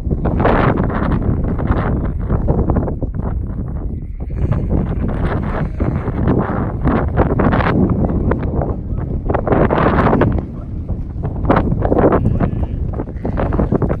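Wind buffeting the microphone, with a constant low rumble and irregular gusts throughout.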